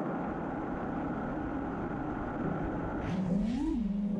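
5-inch FPV racing quadcopter's brushless motors and props running with a steady, many-toned whine, then rising in pitch about three seconds in as the throttle comes up and it lifts off. Heard through the onboard action camera.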